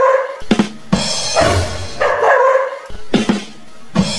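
Background music with a beat, and a dog barking over it.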